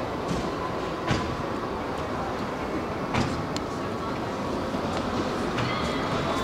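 Steady background hubbub of a car display hall with faint, indistinct voices, and a few sharp clicks about one, three and three and a half seconds in.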